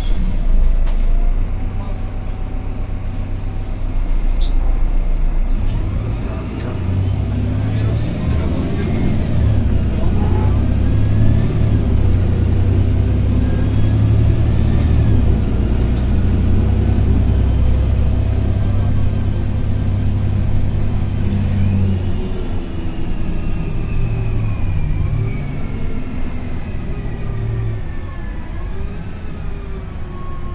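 Karosa B961E articulated city bus heard from inside the cabin while under way: the diesel engine runs heavily under load with road rumble and a thin whine that glides in pitch. From a little past the middle the engine eases off and the whine falls steadily, as the bus slows.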